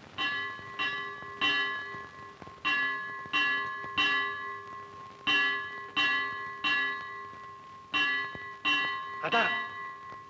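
A metal bell struck repeatedly in groups of three, each strike ringing out and fading. There are four such groups, with a short pause between each.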